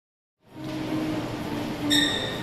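Indoor shopping mall ambience: a steady hum of background noise that cuts in about half a second in, with a brief ringing tone near the end.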